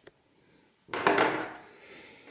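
Metal saws clattering as they are handled and set down on a wooden workbench: a loud metallic clatter about a second in that rings briefly and fades.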